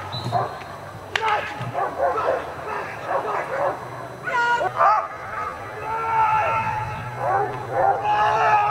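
German Shepherd Dog barking and yipping at a protection helper, with a sharp crack about a second in and voices.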